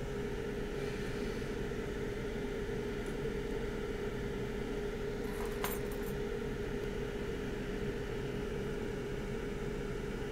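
A steady hum with one held tone, at an even level throughout. One small sharp click a little past the middle.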